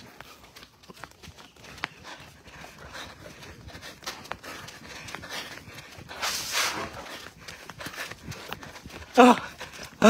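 Footsteps on a concrete road, with small irregular clicks and a breathy swish partway through, as a person walks with a young elephant close alongside. Near the end come two short, loud vocal calls about a second apart.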